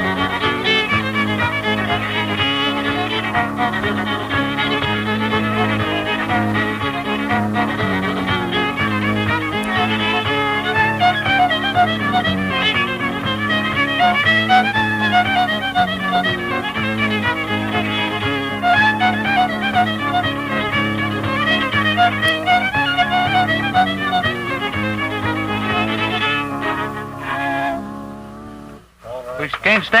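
Old-time fiddle tune, bowed at a lively pace, on a 1957 home tape recording. The playing stops about two seconds before the end.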